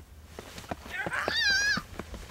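A shrill, high-pitched squeal from a woman's voice, about a second long and wavering near its end, over quick steps on pavement.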